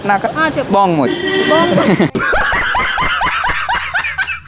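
Talking, then from about halfway a group of teenage boys laughing in quick, repeated bursts.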